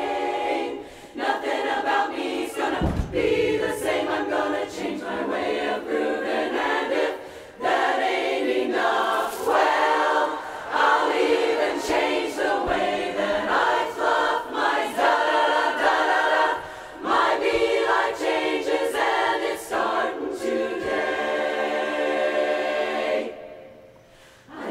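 Women's barbershop chorus singing a cappella in close four-part harmony, in phrases with brief breaks. Near the end the chorus holds one long chord, which cuts off sharply.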